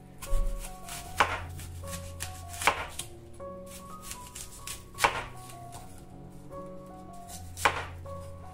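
Serrated kitchen knife slicing through a fresh apple into rings on a wooden cutting board: about five separate cuts, irregularly spaced a second or more apart. Soft background music plays underneath.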